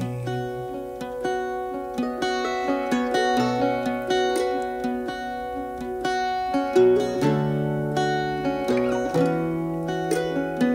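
Instrumental break in a folk song: plucked string instruments pick out a melody in quick, evenly spaced notes over held low notes, with no singing.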